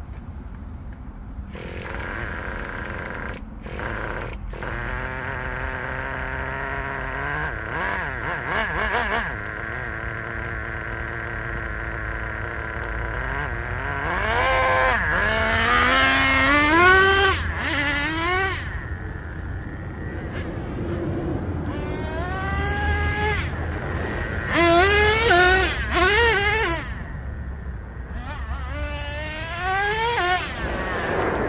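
Traxxas Revo 3.3 nitro RC monster truck's engine, fitted with an OS Max 11K carburetor, running at a steady pitch and then revving hard again and again. It gives a high-pitched whine that climbs and drops in pitch, loudest about halfway through and again near the end.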